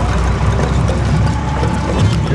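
Steady low rumble of a vehicle's engine and road noise while driving, heard from inside the vehicle.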